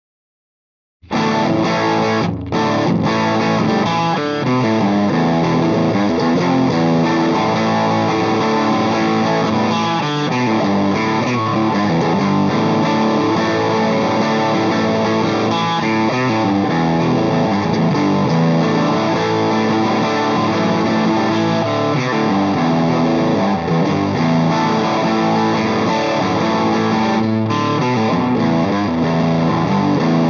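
Heritage H535 semi-hollow electric guitar played through an engaged Lovepedal Blackface Deluxe overdrive pedal into a Marshall JTM45 valve amp: continuous distorted chords and riffs. The playing starts suddenly about a second in, after silence.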